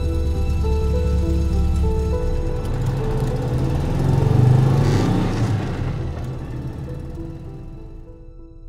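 Gentle background music with the sound of a van's engine driving past over it, swelling to its loudest about halfway through and then dying away. The music fades out near the end.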